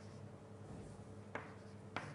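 Writing on a lecture board: a faint scratch with two sharp taps, one just past the middle and one at the end.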